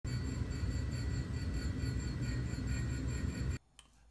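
Parker Majestic manual surface grinder running: a steady low rumble with several steady high whining tones over it. It cuts off abruptly shortly before the end.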